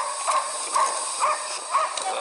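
Pig grunts and oinks, short calls repeated about twice a second.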